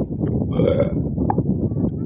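Soundtrack of an amateur cartoon playing through a laptop speaker, coarse and distorted, with a louder burst of sound about half a second in and a short high blip just after a second.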